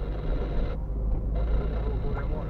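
Steady low rumble of a car driving slowly, with engine and tyre noise heard from inside the cabin.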